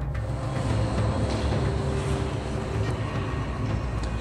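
Steady low background rumble, like distant road traffic, with no distinct single event.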